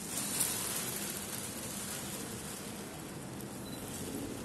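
Rustling of a plastic bag over a steady room hiss, loudest in the first second.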